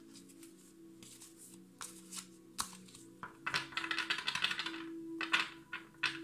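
A deck of tarot cards being shuffled by hand, with a quick run of rapid card flaps in the middle. A few sharp knocks follow near the end as the deck is tapped on edge against a glass tabletop to square it, all over soft background music.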